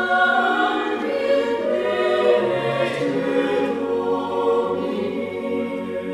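Choir singing chords in several parts, with long held notes.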